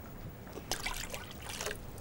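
Water trickling and splashing from a jug into a large metal preserving pan that already holds liquid. The splashes come in a quick run of short spurts in the second half.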